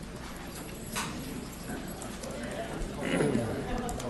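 Footsteps and low chatter of many people walking out of a meeting room, the murmur growing louder in the second half, with a single knock about a second in.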